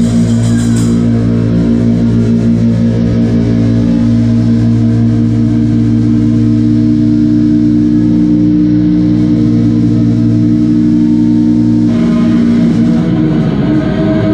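Doom metal band playing live: distorted electric guitars ring out a long, sustained chord once the drums and cymbals stop, about a second in. The band moves to a new chord about twelve seconds in.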